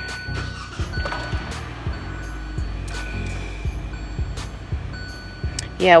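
Music playing quietly from a car radio inside the car cabin, with a few light handling clicks.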